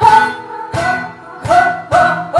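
Live bulería-style flamenco music from a small acoustic group of guitar, cajón and piano, with sharp accented chords in an uneven rhythm about twice a second. The main pitch steps down about three-quarters of a second in.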